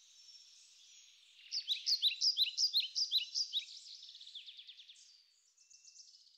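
Songbird singing: a rapid series of short, high chirping notes, loudest between about one and a half and three and a half seconds in, then fainter.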